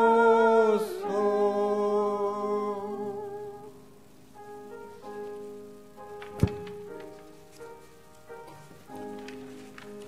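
Singing: a voice holds a long note with vibrato for about the first three seconds, then soft, steady sustained music carries on. A single sharp click sounds about six and a half seconds in.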